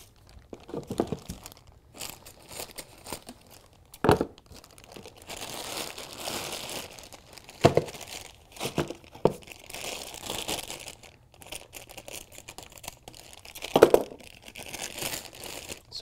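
Plastic packaging bags crinkling and rustling in irregular spells as speaker cables are pulled out of their wrap, with a few sharp knocks from the handling.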